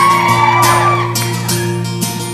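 Acoustic guitar strummed in an instrumental break between verses, with several audience voices whooping over it that fade out about a second and a half in.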